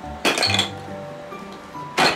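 Plastic toy blocks clattering against each other in a plastic toy box, in a short burst about a quarter second in and again at the very end, over background music.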